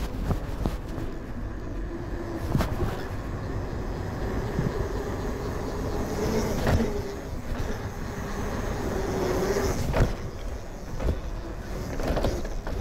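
Mountain bike rolling fast down a concrete path: a steady rush of tyre and wind noise with a wavering hum, broken by a few sharp knocks as the bike hits bumps and joints in the concrete.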